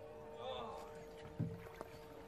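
Pond water sloshing and splashing as a plastic jerrycan is filled in the water and lifted out, with a low knock of the can about one and a half seconds in.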